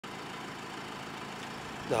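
Steady outdoor background noise with a low vehicle hum, even and unchanging; a man's voice starts right at the end.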